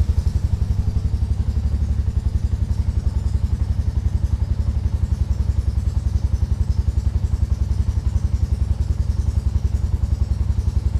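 Motorcycle engine running at low revs, likely idling as the bike stands still, with a fast, even pulse of about eight beats a second.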